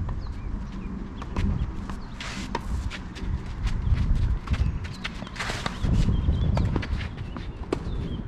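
A tennis rally on a clay court: sharp pocks of racket strikes and ball bounces, with the near player's footsteps and shoes scuffing on the clay close by. Two longer scraping bursts come about two and five and a half seconds in.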